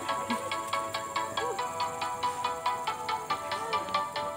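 Background music with a steady, quick beat and a high, repeating melody.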